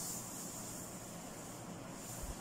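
Faint steady hiss of background noise, with no distinct sound standing out.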